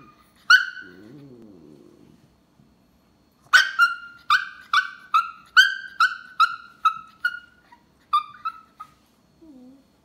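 A Chihuahua vocalising. It gives one sharp high yip, then a low wavering grumble for about a second, then a quick run of about a dozen high yips, two or three a second, growing fainter near the end, and a short low grumble to finish.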